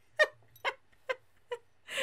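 A woman laughing: a run of four short, breathy laughs spaced about half a second apart.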